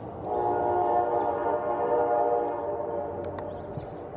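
A horn sounding one long, steady-pitched blast of about three seconds, fading near the end.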